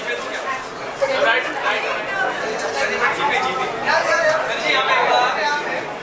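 Chatter of several people talking over one another, with a short sharp sound about a second in.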